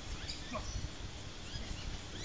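Short high animal chirps and a falling squeak about half a second in, over a steady rumble of wind on the microphone.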